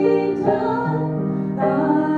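A woman singing a solo into a handheld microphone over instrumental accompaniment, holding long notes that change pitch about half a second in and again near the end.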